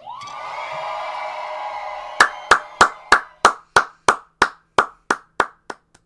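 A person clapping hands about a dozen times, roughly three claps a second, stopping near the end. It is preceded by a couple of seconds of crowd cheering and screaming, which fades as the claps begin.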